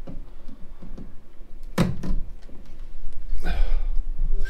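A single solid thunk about two seconds in, with a few light clicks and a short rustle near the end.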